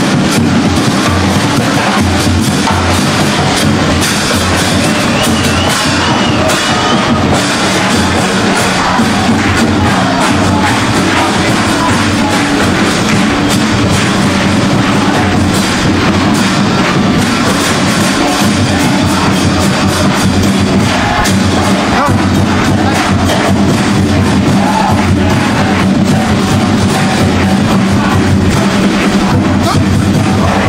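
Live Uruguayan murga music: the murga's drums, bass drum among them, keep a steady driving beat, loud throughout, with audience noise under it.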